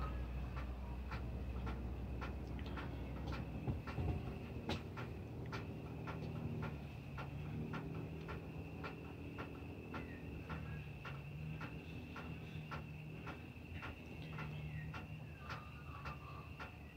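Regular ticking, about two ticks a second, over a faint steady high-pitched tone.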